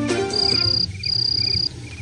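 Crickets trilling in long repeated bursts, with a few short, softer chirps between them. The tail of background music fades out in the first half second.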